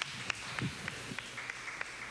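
Light, scattered applause: separate hand claps about three times a second over a faint background of further clapping.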